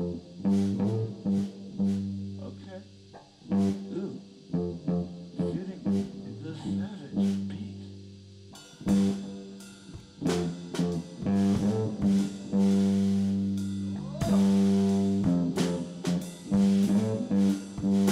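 Live improvised rock jam: an electric guitar plays held, ringing low notes over an acoustic drum kit, with drum hits and cymbal crashes growing busier in the second half.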